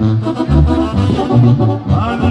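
Brass band music: sustained horn notes over a low bass line that steps from note to note about every half second.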